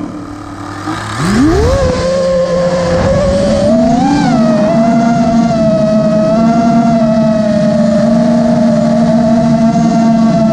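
FPV quadcopter's brushless motors and propellers, heard from the onboard GoPro, spinning up from idle with a sharply rising whine about a second in as it lifts off. It then holds a steady high-pitched whine in flight, with a brief rise in pitch around four seconds in as the throttle is pushed.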